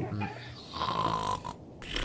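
A man snoring: one drawn-out snore about halfway through, and the next one starting near the end.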